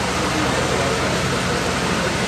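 Steady, even background noise with faint voices murmuring underneath.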